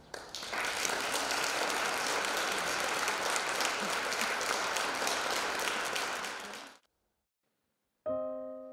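Audience applauding, a dense, steady clatter of many hands that cuts off abruptly about seven seconds in.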